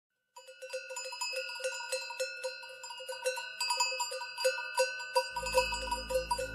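Flock bells of the kind hung on sheep and goats, clanking irregularly at about four strikes a second. A low steady drone comes in near the end, the start of a traditional music piece.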